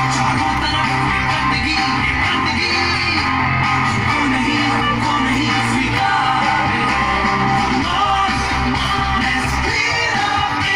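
Loud song with singing over a steady bass line, playing as accompaniment to a children's stage dance.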